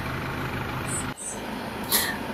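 Chevrolet S10's 2.8 four-cylinder diesel engine idling with a steady low hum. A little over a second in, the sound cuts off abruptly and gives way to quieter engine and ambient noise.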